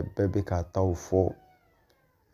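A man's voice speaking in short, drawn-out syllables, breaking off about a second and a half in.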